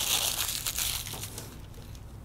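Sheet of paper pattern rustling and crinkling as it is handled, dying away after about a second and a half.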